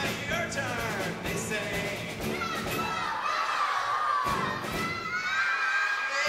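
A large group of children singing and shouting along, loud and all together, over live acoustic guitar music; the low accompaniment drops out briefly twice, in the middle and near the end.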